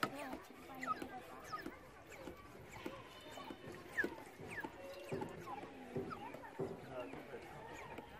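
The hand pump on a Survival Jerrycan water filter being worked to build pressure, with a few knocks from the strokes in the second half.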